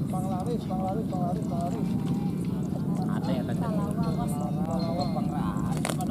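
Several people talking at once, indistinct background chatter from the crowd along the pond bank, over a steady low rumble. There is a sharp click just before the end.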